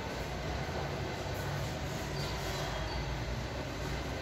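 Steady low rumbling background noise with no break or change.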